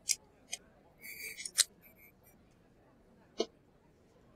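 A few short, sharp clicks during a pause in speech, the loudest about one and a half seconds in, with a brief faint rustle just before it.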